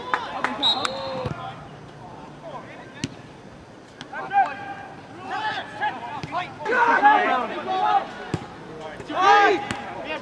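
Indistinct shouting voices during a soccer match, coming in several calls from about four seconds in and loudest near the end, with a few sharp knocks in between.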